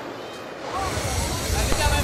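A freight train moving close by: a low rumble with a wide rushing noise that sets in under a second in and holds, with faint voices over it.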